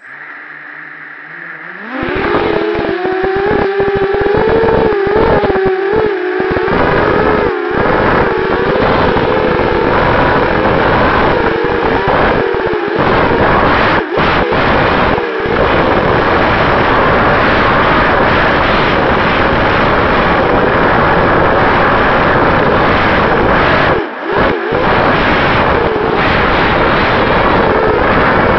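Racing quadcopter's four Sunnysky 2204 brushless motors and propellers, heard close from the onboard camera: they spin at idle at first, then about two seconds in the throttle comes up and they run loud, the pitch wavering up and down with throttle changes, with a few brief dips where the throttle is cut.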